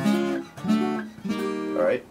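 Taylor acoustic guitar strummed three times, each chord ringing briefly before the next.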